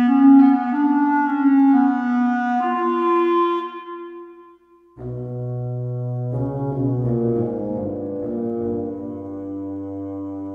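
Woodwind ensemble music played on Vienna Symphonic Library sampled instruments: piccolo, clarinet, bassoon and contrabassoon. Held chords for about four seconds stop briefly. A new phrase then enters with a low sustained bassoon and contrabassoon note under moving clarinet lines.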